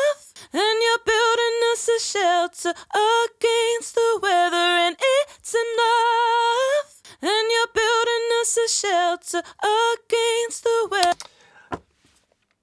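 Isolated female lead vocal from a mix session, singing unaccompanied in phrases with vibrato on held notes. The track is being brightened with saturation or a high-shelf EQ. The singing stops about eleven seconds in.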